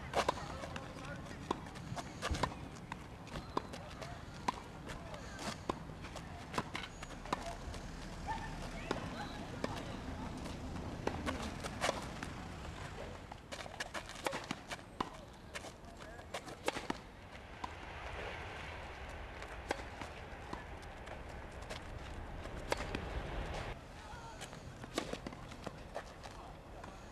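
Tennis balls struck by rackets and bouncing on a hard court: a rally of groundstrokes and then volleys, with sharp, irregular hits and bounces throughout. Near the end a ball is bounced before a serve.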